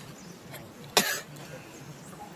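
A single short, sharp cough about a second in.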